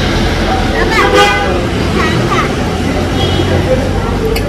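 Steady low rumble of road traffic with a vehicle horn sounding briefly about a second in, and faint voices in the background.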